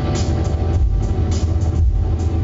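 Live band playing loud alternative rock, with a heavy, steady bass low end under the instruments.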